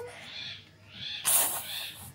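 A child's soft, breathy laughter: two quiet huffs of breath, the second, about a second and a quarter in, the louder.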